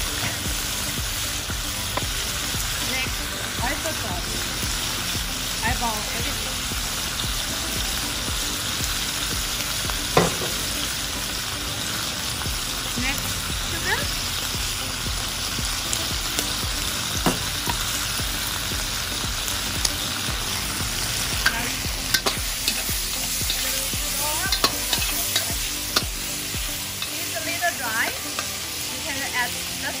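Octopus stir-frying in a hot wok: steady sizzling, with a metal spatula scraping and knocking against the pan. The sharp spatula knocks come more often in the last third.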